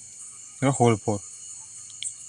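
A few spoken syllables over a steady, high-pitched background buzz that runs without a break.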